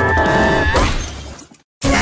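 Cartoon soundtrack: a held musical tone fades out into a moment of silence, then a sudden loud crash breaks in near the end as the character hits the wall and is electrocuted.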